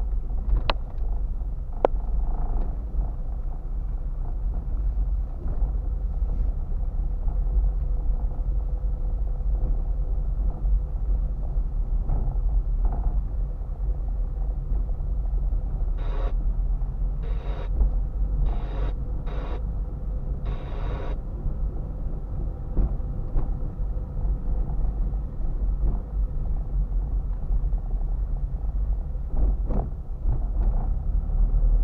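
Car driving slowly on a rough road, heard from inside the cabin: a steady low engine and tyre rumble. There are a few sharp clicks in the first two seconds, and five short bursts of higher noise about halfway through.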